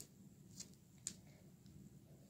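Near silence with two faint clicks, about half a second and a second in, from beads being handled and slid along a threading needle.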